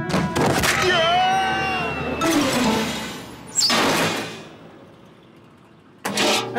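Cartoon slapstick sound effects: a hit, a wavering pitched sound, another hit, then a loud crash about three and a half seconds in that slowly fades away.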